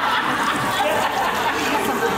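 Laughter and overlapping chatter from several people.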